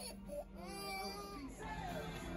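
A toddler's brief cry: one wailing note that rises and falls, starting about half a second in and lasting about a second.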